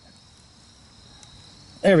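Faint, steady, high-pitched trilling of insects such as crickets, with a man saying "there" near the end.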